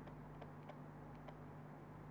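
Faint scattered ticks of a pen or stylus writing on a tablet, over a steady low hum.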